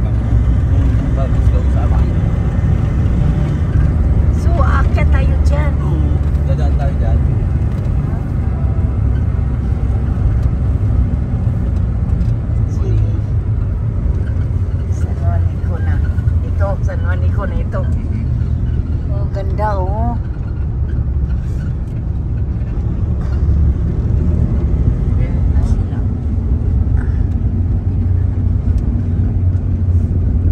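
Steady low road and engine rumble inside the cabin of a moving passenger van.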